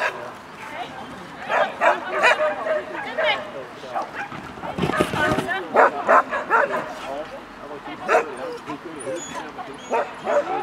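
A dog barking and yipping in short barks, in several runs of a few barks each, with a person's voice calling alongside.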